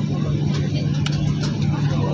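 Steady drone of an airliner cabin, heard from inside: a low, even hum with rumble beneath it and a few faint clicks in the middle.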